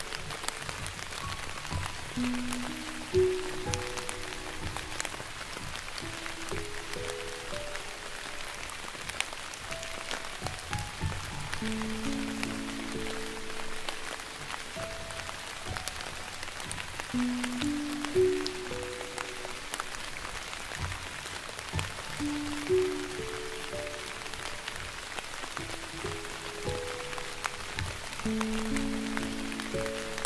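Slow, gentle piano melody of held, overlapping mid-range notes over a steady patter of soft rain.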